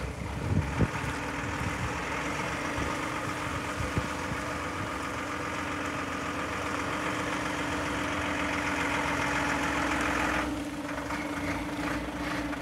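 Volvo FL6 truck's turbocharged, intercooled six-cylinder diesel running at low speed as the truck drives slowly, with a steady hum. The sound eases slightly about ten seconds in.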